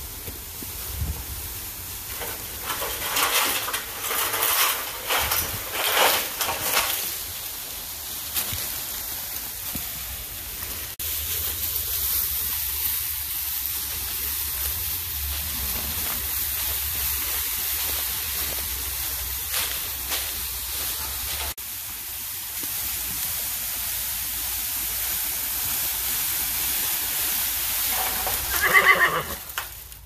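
Draft cross mare dragging a cut tree over dry leaves and dirt, the brush scraping and rustling in loud bursts, followed by a long stretch of steady rushing noise. Near the end a horse whinnies once, the loudest sound.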